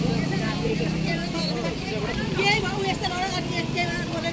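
Onlookers' voices chattering in the background, with a vehicle engine running low under them that fades out about a second and a half in.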